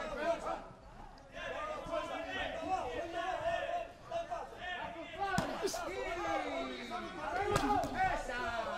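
Men's voices calling out at ringside in a near-empty boxing arena, with two sharp thuds, about five and a half and seven and a half seconds in, as the boxers exchange.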